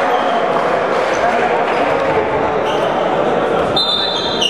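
Reverberant gym din during an indoor futsal game, with players' indistinct shouts and the ball being kicked and bouncing on a wooden floor. A few short high squeaks, likely of shoes on the floor, come through, more of them near the end.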